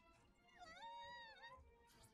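A faint, high, drawn-out cry, about a second long, that dips in pitch at its start and end, coming from the anime's soundtrack.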